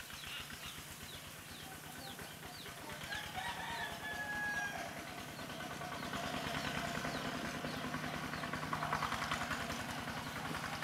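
Rooster crowing about three seconds in, over repeated short chirps of small birds and a steady low hum that grows louder in the second half.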